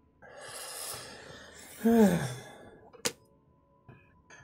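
A man's long, breathy sigh that ends in a short voiced sigh falling in pitch, about two seconds in. A single sharp click follows about a second later.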